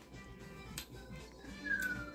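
A cat meows once, faintly and briefly, near the end, its pitch falling.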